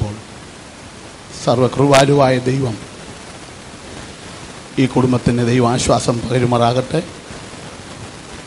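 A man's voice in two long phrases, one starting about a second and a half in and one about five seconds in, over a steady hiss.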